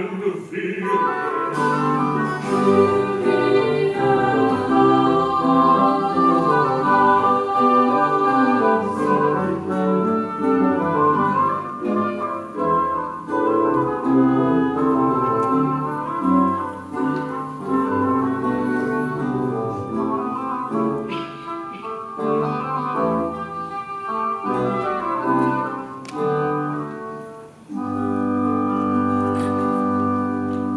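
Classical choral-orchestral music: a boys' choir with a small baroque-style orchestra of strings, woodwinds and harpsichord playing a moving polyphonic passage. A little before the end it settles on a long held chord.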